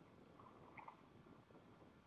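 Near silence: faint outdoor background hush, with a few brief, faint high chirps a little under a second in.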